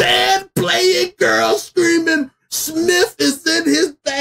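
A man's voice exclaiming excitedly in loud, unintelligible vocal outbursts with brief breaks between them.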